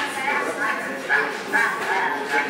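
Soundtrack of a projected comedy film playing in a room: a run of short, high cries, a few each second.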